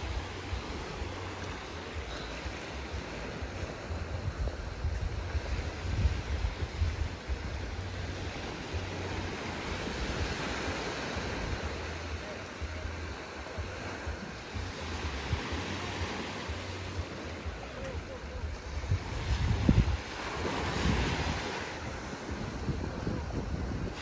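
Small sea waves washing in and drawing back over a sandy beach, with wind buffeting the microphone in gusts.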